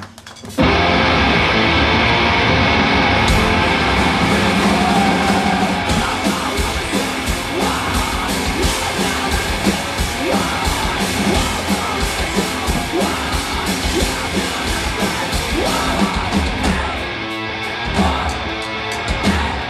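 Live two-piece noise punk band, distorted electric guitar and drum kit, crashing in loud about half a second in and playing a fast, heavy song. The sound grows brighter about three seconds in, with a dense run of drum and cymbal strikes.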